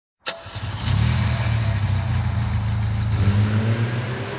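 A low, steady, engine-like drone from an intro sound effect under an animated title, opening with a sharp click.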